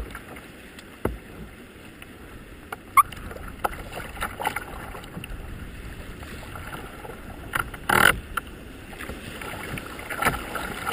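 Rough river water rushing and splashing against a kayak's hull, with a few sharp knocks and a louder splash about eight seconds in.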